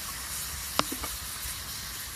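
Porterhouse steaks sizzling in a cast iron skillet with a splash of whiskey in the pan: a steady hiss, with one sharp pop just under a second in and a couple of fainter ones after it.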